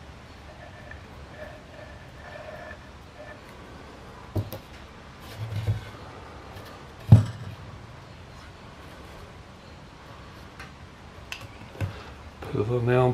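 Wooden boards knocked against each other and set down on a rubber-matted workbench as they are fitted together for gluing: a few separate knocks, the loudest about seven seconds in. Faint sounds from a squeezed wood-glue bottle at the start.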